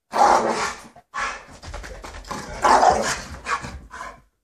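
Dog barking loudly: a first outburst, a short break about a second in, then a longer run of barks, loudest near the end.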